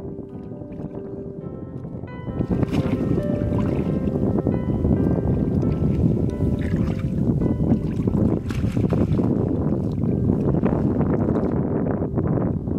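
Background music with held tones, then from about two seconds in, loud irregular splashing and sloshing of water as a fishing net is hauled out of shallow river water into a wooden boat. The music carries on faintly under the splashing.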